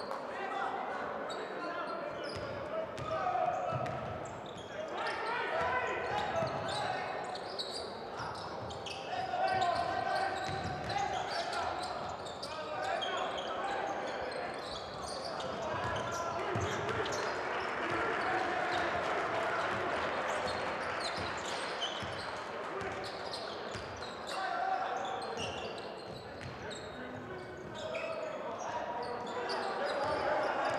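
Basketball being dribbled on a hardwood court during live play, with short, repeated bounces amid voices shouting and calling in a large hall.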